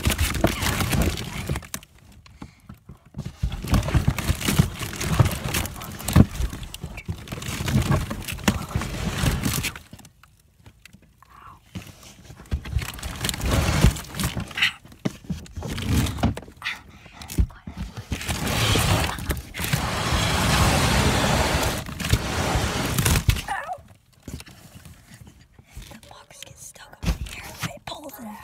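Cardboard box being wheeled on a hand truck (dolly): a rolling rattle with knocks and jolts in long stretches, broken by quieter pauses about two, ten and twenty-four seconds in.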